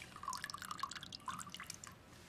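Fresh lemon juice dripping and trickling from a hand-held metal lemon squeezer into a glass tumbler of gin, faint, in small irregular drips.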